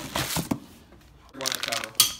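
Plastic packaging crinkling and rustling as parts are handled in a cardboard box, with a sharp click about half a second in.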